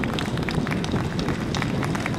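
Scattered applause from an audience: many uneven hand claps over a steady crowd rumble, welcoming an executive who has just been introduced.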